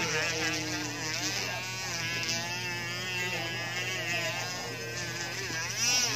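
A voice with gliding, sung-like pitch and no clear words, over a steady low hum.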